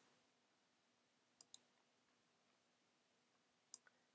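Near silence broken by faint computer mouse clicks: a quick pair about a second and a half in and another pair near the end.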